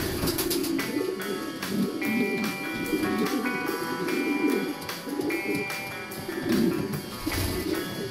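Background music, with a racing pigeon cooing repeatedly underneath it.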